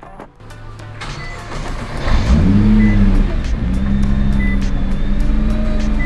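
Nissan GT-R Nismo's 3.8-litre twin-turbo V6 starting up. It catches about two seconds in with a quick rising rev flare, then drops back and settles into a steady idle.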